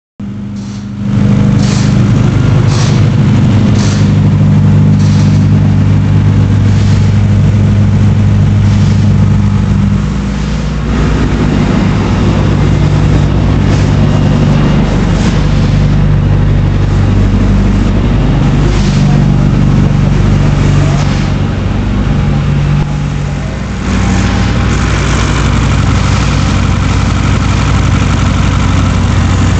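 Freshly built Honda K24/K20Z3 hybrid four-cylinder (K24A4 block, K20Z3 head) in a 2009 Civic Si, breathing through a Skunk2 header and 3-inch exhaust, on its first start-up: it catches about a second in and runs at a steady fast idle. The idle drops and changes about ten seconds in and dips briefly near the end.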